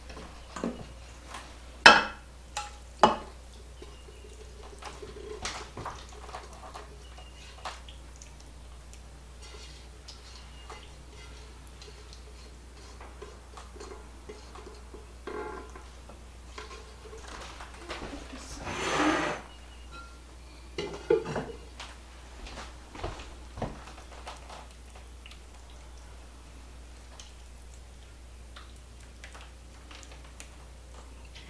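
A plastic spoon knocking and scraping against a cooking pot as a thick squash-and-cheese casserole mixture is scooped out and dropped into a ceramic baking dish. Two sharp knocks a couple of seconds in are the loudest. About two-thirds of the way through comes a longer scrape of about a second as the pot is emptied.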